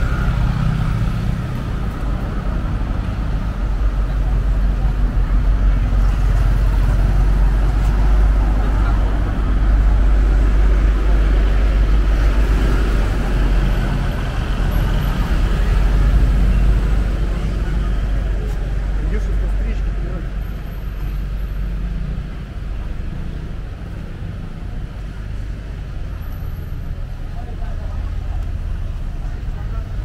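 Street traffic: cars, a van and motorbikes passing close by with engine and tyre noise, mixed with passersby talking. Louder through the middle, easing off somewhat after about twenty seconds.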